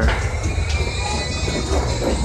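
Low rolling rumble of suitcase wheels and footsteps on a jet bridge floor, with a thin high whine over it that fades out after about a second and a half.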